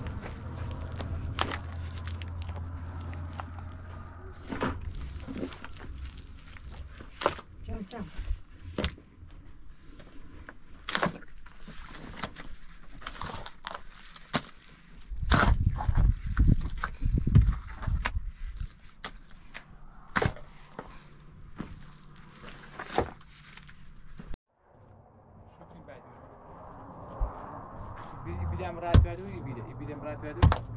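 Scattered knocks, clicks and scrapes of stones and earth being worked by hand and shovel, with a denser run of heavy thumps around the middle. The sound stops abruptly about two-thirds of the way through, and a quieter stretch with a few knocks follows.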